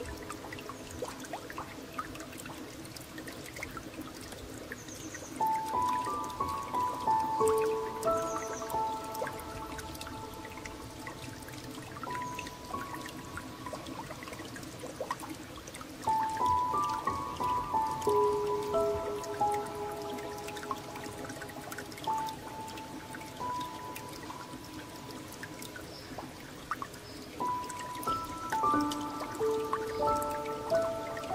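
A slow, gentle solo piano melody over a steady background of trickling, dripping water. The piano phrases swell about five seconds in, again around sixteen seconds, and once more near the end, with quieter held notes between.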